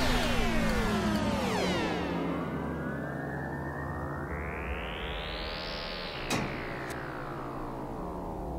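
Synthesized sci-fi warp sound effect. A dense cascade of falling pitch sweeps fades out over the first two seconds, then a single sweep rises and falls again over a low, steady electronic hum, with two sharp clicks about six seconds in.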